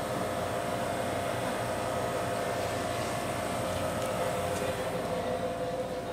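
Steady mechanical hum of a store's background machinery, with faint steady whining tones and a few light clicks.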